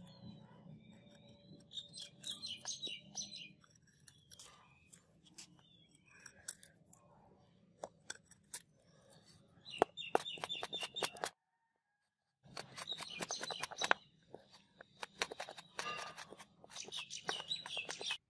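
Chopper blade shaving a softwood block, slicing off curls in bursts of quick crackly strokes, with a brief gap of silence near the middle.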